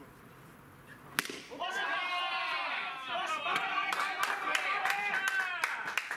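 A bat hits the ball with a single sharp crack about a second in. Voices shout and cheer right after, and rapid hand clapping starts a couple of seconds later.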